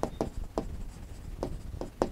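Stylus writing on an interactive touchscreen display: a quick, irregular run of short taps and scratches as letters are written.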